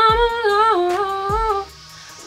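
A young woman singing solo, holding a wordless melody whose long notes step down in pitch, and stopping about a second and a half in. A low, steady beat sounds underneath.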